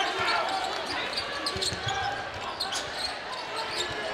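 Arena sound of a basketball game in play: a ball being dribbled on the hardwood court, with several separate thumps, over the murmur of crowd voices.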